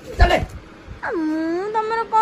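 A thump, then a person's long drawn-out wail that starts high, slides down and is held on one note.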